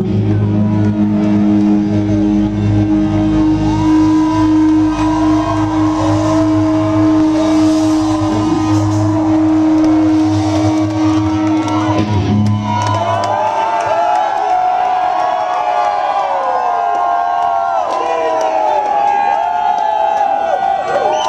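Loud, muffled live rock band holding a sustained closing chord, which stops about 13 seconds in. The concert crowd then cheers, shouts and whoops.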